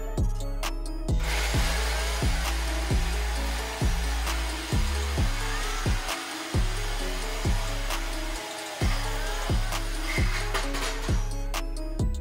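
Background music with a steady beat. From about a second in, an angle grinder with a cut-off wheel makes a steady hiss as it cuts through the car's steel front frame structure.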